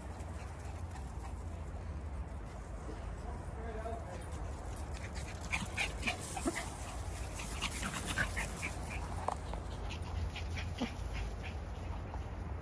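Small dogs yipping and barking faintly, with short high yips scattered through the second half, over a steady low rumble.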